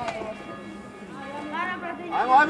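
Calling voices of players and spectators on a football pitch, quieter in the middle, with a single sharp knock right at the start.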